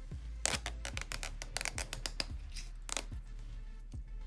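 Adhesive liner being peeled off the sticky foam ring of a replacement headphone ear pad: a run of crackling ticks and short rips lasting about two and a half seconds. Background music with a steady bass beat plays throughout.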